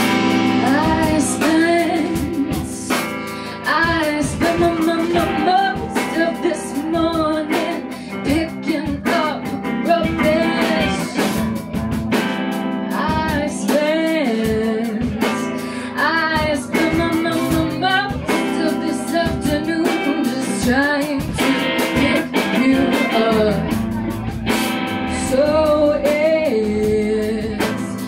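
Live rock band playing: a woman singing lead over electric guitars, bass guitar and a drum kit.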